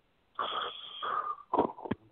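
A man imitating a sleeper's snoring with his voice: one long breathy snore, then a few short sharp mouth sounds near the end, heard through a phone line.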